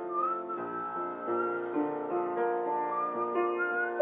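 Human whistling of a melody over an upright piano playing improvised chords. The whistled line slides between notes and rises near the end, while piano notes sound under it.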